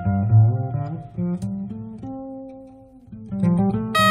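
Pizzicato double bass playing a run of low plucked notes, each sounding and fading, in a jazz piece between saxophone phrases.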